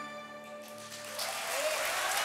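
Concert harp's final notes ringing and fading away, then audience applause swelling in from about a second in.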